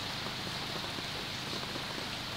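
Steady heavy rain falling, an even hiss with no breaks.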